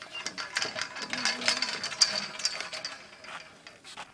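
Irregular metallic clicks and clinks of a steel well pipe and hand tools being worked at a borehole head, with the sharpest clink about two seconds in.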